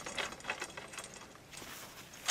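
Faint clicks and small rattles of telescope hardware being handled, as a captive knob on the truss connection is turned by hand. The clicks fall mostly in the first half.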